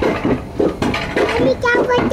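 A child's voice, with speech-like sounds at first, then drawn out on one steady note about a second in.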